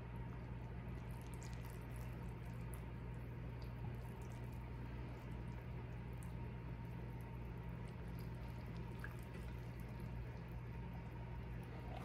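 Warm strawberry gelatin mixture poured slowly from a glass cup onto a poked sheet cake: a faint, soft liquid trickle over a steady low hum.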